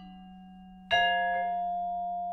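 Concert marimba played with four yarn mallets: a low note rings on, and about a second in a chord of several notes is struck together and rings, fading slowly.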